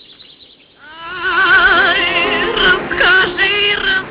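A woman singing a slow melody with strong vibrato from an old black-and-white film's soundtrack. The song comes in after about a second of near-quiet.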